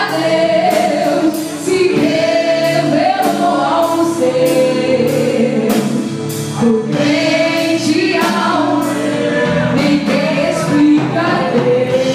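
Live gospel worship song: a woman sings lead into a microphone over a band of drum kit, keyboard and electric bass, with the congregation singing along. Regular drum strokes keep a steady beat under the singing.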